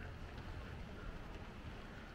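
Faint, steady outdoor background noise with a low rumble underneath.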